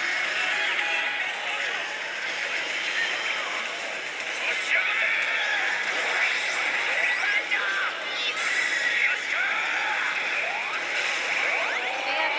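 Oshu! Banchou 3 pachislot machine playing its sound effects and music, with the constant din of a busy pachinko hall behind it.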